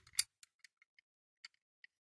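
Small clicks of a Dinky Toys die-cast Range Rover ambulance model's metal and plastic parts being handled: one sharper click just after the start, then a handful of faint, scattered ticks.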